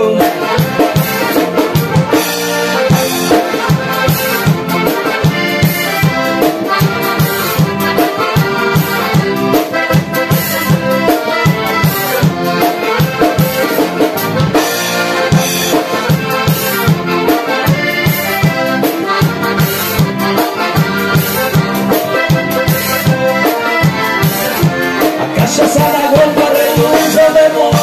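Instrumental break in gaúcho folk music: two piano accordions play the melody over a strummed acoustic guitar, with a steady, even rhythm.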